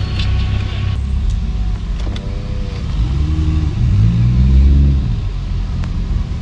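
Car engines running in slow traffic, a steady low rumble, with one engine revving up and dropping back about three to five seconds in.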